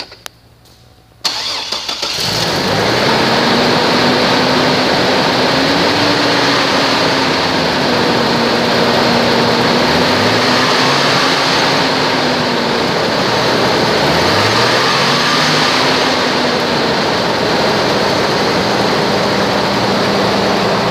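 2002 Chevrolet Trailblazer's 4.2-litre Vortec inline-six starting about a second in, then running steadily at idle.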